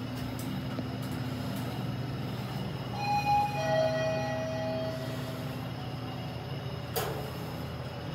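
Toshiba passenger lift running with a steady low hum, then sounding its two-note arrival chime, a higher tone followed by a lower, longer one, about three seconds in. A single sharp knock from the lift comes near the end.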